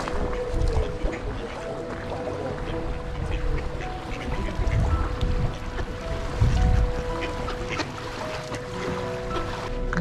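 Mallard ducks quacking while a flock is fed on a lakeshore, under background music with sustained held notes. A low rumble swells twice in the middle.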